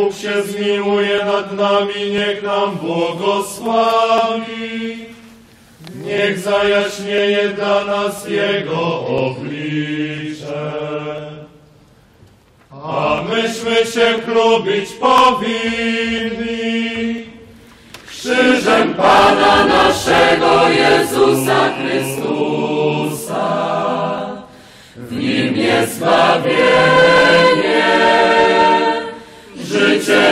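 Voices singing a slow liturgical chant in phrases a few seconds long, with short pauses between them. The line is single and clear at first and grows fuller from about eighteen seconds in.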